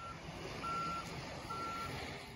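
Backup alarm of a heavy vehicle beeping, one steady high tone about once a second, over a low engine rumble.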